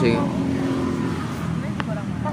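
A steady low engine drone, with a man's voice saying one word at the very start.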